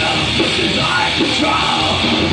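Live industrial metal band playing loud through a club PA, the singer yelling into the microphone over heavy guitars and drums.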